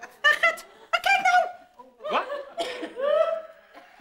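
Studio audience laughing in several short bursts.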